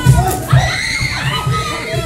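A group of young children shouting and cheering excitedly all at once, many high voices overlapping.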